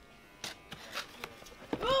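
A few faint clicks and rustles of a cardboard camera box and its packaging being handled, then a short exclaimed 'oh' from a man near the end.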